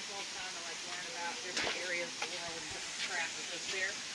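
Indistinct voices of people talking, over a steady background hiss, with a couple of short sharp clicks.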